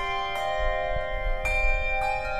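Handbell choir ringing chords, bright bell tones that ring on and overlap. New chords are struck about a third of a second in and again about a second and a half in.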